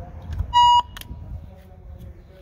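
Tegui intercom door-entry panel giving one loud, short electronic beep, about a quarter second long, as its call button is pressed to ring the nuns. A faint click follows just after it.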